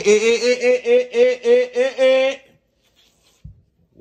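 A person laughing: a run of about eight short, evenly pulsed 'ha' sounds at a fairly steady pitch, lasting about two and a half seconds.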